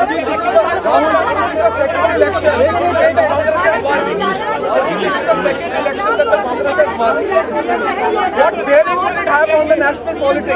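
Several voices talking at once, an overlapping chatter of speech, over a steady low hum.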